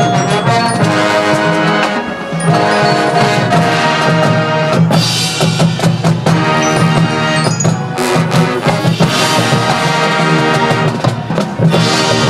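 High school marching band playing in full: brass and woodwinds over a drumline of snares and bass drums with front-ensemble percussion, and accented full-band hits about five and eight seconds in.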